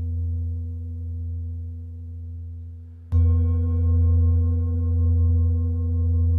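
Large Tibetan singing bowl resting on a person's back, ringing with a deep hum and fading, then struck again about three seconds in and ringing out loudly with a deep fundamental and many bright overtones.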